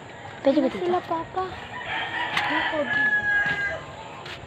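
A rooster crowing: one long call from about two seconds in, lasting nearly two seconds, after a few short calls.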